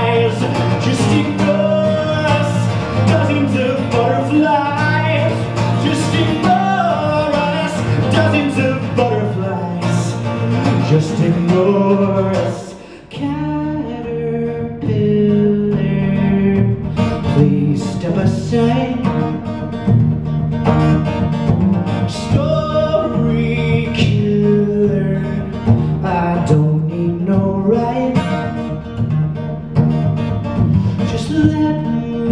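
A man singing live to his own strummed acoustic guitar. The music drops off briefly about 13 seconds in, then the strumming and singing go on.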